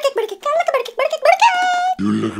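A very high-pitched voice chattering rapidly in short bursts, ending in one long held high note near the end.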